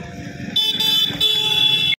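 MEMU train's horn sounding two high-pitched blasts as the train approaches, the first starting about half a second in and the second, longer one just after a second. A low rumble runs underneath.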